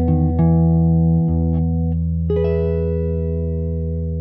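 Clean electric guitar played fingerstyle: a few single notes over a held low bass note, then a chord plucked about two seconds in that rings on, slowly dying away.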